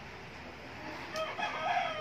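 A rooster crowing once, starting about a second in, the call falling in pitch as it trails off.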